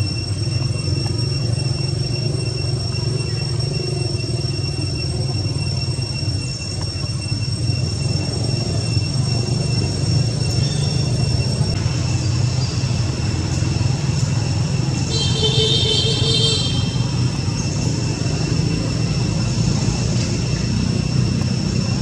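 A steady low rumble of outdoor background noise, with a continuous thin high-pitched whine above it. A short high, stacked call sounds about fifteen seconds in.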